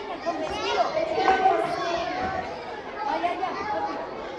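Many overlapping voices chattering, children's among them, with no clear words.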